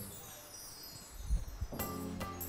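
A shimmer of high, ringing chimes fading away, then instrumental music starting near the end.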